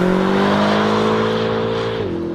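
Car engine held at high revs during a burnout, its note holding and creeping slowly higher, with the hiss of spinning tyres over it.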